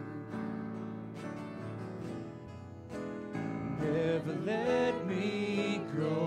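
Live church worship band playing a slow song led by acoustic guitar, with singing coming in about halfway through.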